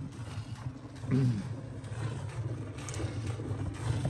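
A steady low hum, broken about a second in by one short vocal sound.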